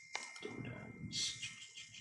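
A single computer mouse click, followed by faint breathing and low mumbling.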